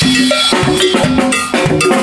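Drum kit played live with a band: quick drum and cymbal strokes over the band's short pitched notes, in a lively dance rhythm.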